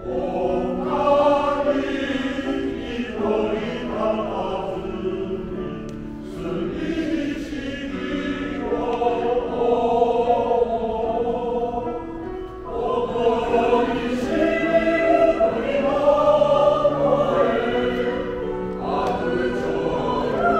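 Amateur choir of mostly elderly men singing a slow song in several parts in full voice, in phrases that pause briefly every few seconds.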